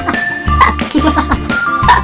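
Background music: a high melody of short held notes over a beat with repeated deep bass notes.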